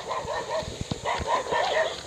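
A dog making a quick run of short yips or whines, about four a second.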